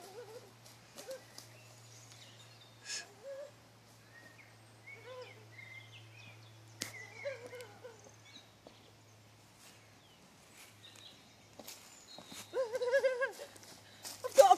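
Quiet outdoor background with a steady low hum, a few faint short pitched calls and clicks, then a person's voice calling out briefly near the end.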